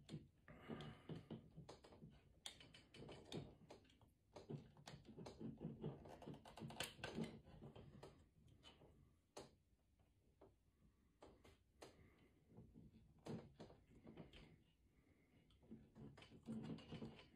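Faint, irregular clicks and taps of hard plastic as a ZD Toys Whiplash Mark II action figure is handled and a whip accessory is worked into its hand, coming in clusters with a quieter stretch about ten seconds in.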